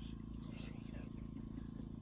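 A steady low hum that holds even, with no speech over it.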